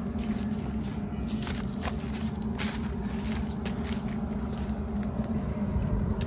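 Footsteps crunching and rustling through dry corn stalks and crop residue, in irregular steps, over a steady low hum.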